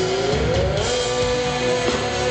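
Symphonic metal band playing live: distorted guitars and drums under a long held melody note that slides up to a higher pitch about half a second in and then holds.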